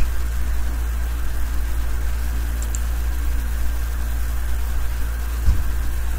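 Steady low hum with an even hiss over it and no speech, with one brief low bump about five and a half seconds in.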